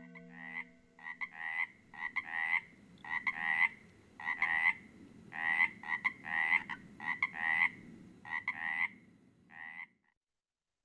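A frog calling over and over, roughly once a second, each call a quick two-part croak.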